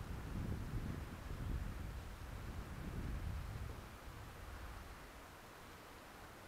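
Irregular low wind rumble on a helmet-mounted camera's microphone as a bicycle rolls along a dirt path, easing off about four seconds in to a faint steady hiss.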